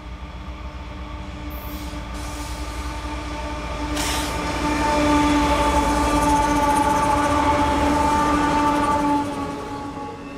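A Canadian Pacific diesel freight locomotive and its double-stack container train approaching and passing close by. A low rumble grows louder to a peak about halfway through as the locomotive goes by. A steady chord of held tones rings over the rumble throughout.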